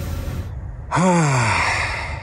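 A man's single long voiced sigh, falling in pitch, starting about a second in.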